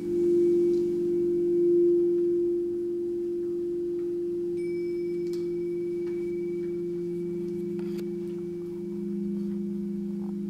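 Quartz crystal singing bowls sounding together in long, steady overlapping tones, swelling loudest in the first couple of seconds and then holding level. A faint high ringing tone joins about halfway, with a few light taps.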